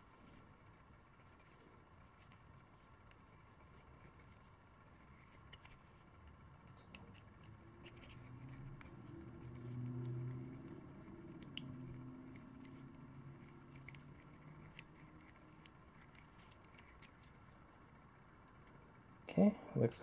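Small hand reamer being worked by hand inside the freshly cut end of a metal throttle elbow, opening up the passage that closed up in the cut: faint scratchy scraping and light clicks. A faint low murmur comes in about halfway through.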